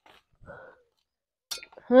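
Mostly quiet, with a woman's faint short breath-like vocal sound about half a second in, then her speech starting near the end.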